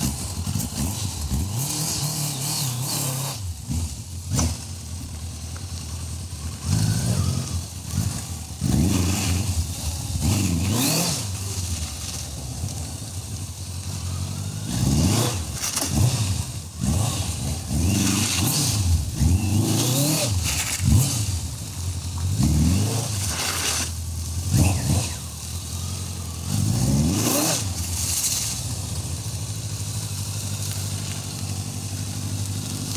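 1986 Kawasaki GTR1000 Concours's inline-four engine being ridden at low speed, revving up in short rising pulls about ten times and dropping back between them.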